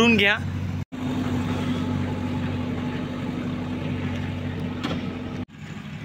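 An engine running steadily with a low, even hum. It cuts in abruptly about a second in and cuts off abruptly near the end.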